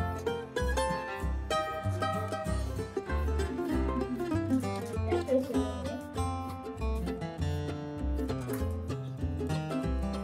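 Background music: a plucked-string melody over a steady, rhythmic bass beat.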